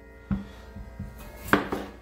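Knocks of a gold potato and chef's knife on a plastic cutting board: a sharp knock just after the start and a louder one about a second and a half in, with a few lighter taps between.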